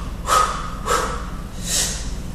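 A man breathing out hard and sharply, three times in two seconds, from the effort of snatching a 48 kg kettlebell overhead and bringing it back down.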